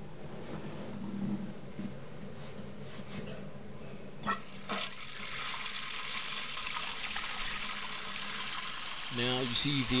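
Toilet tank refilling: after a click or two about four seconds in, water starts hissing in steadily through the bottom of the dual-flush kit's fill valve and keeps running.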